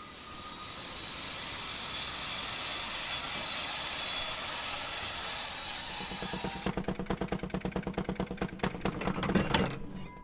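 Train running on rails with a steady high-pitched wheel squeal over a rushing rumble. About seven seconds in this gives way to a fast, even run of mechanical clicks, about seven a second.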